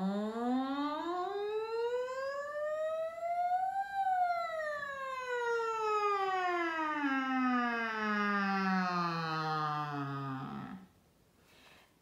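A woman singing a vocal siren on an 'ng' sound: one unbroken glide that rises over two octaves for about four seconds, then slides slowly back down to a low note and stops shortly before the end.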